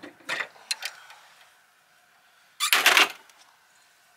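Gas lift strut's end fitting being worked onto the hood's ball stud: a few light clicks, then about two and a half seconds in a loud, half-second clatter as it snaps on.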